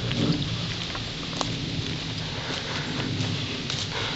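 Footsteps through dry leaf litter on a forest floor: scattered crackles over a steady low rumble of wind on the microphone.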